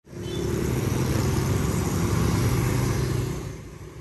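Motor scooter engine running as it passes along a street, with traffic noise; it fades away near the end.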